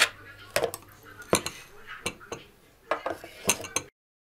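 Table knife cutting a block of butter and knocking against a plastic butter dish: a string of sharp clicks and clinks at irregular intervals. The sound cuts off suddenly just before the end.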